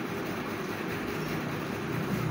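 Steady rumbling background noise with no clear events; a faint low hum rises in about a second in.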